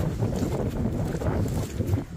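Wind buffeting the microphone in a low rumble, with footsteps squelching through wet mud.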